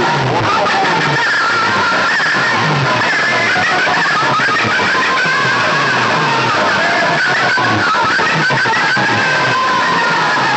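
Loud music played through a truck-mounted stack of horn loudspeakers at a sound-box road show, with a repeating bass line under a melody.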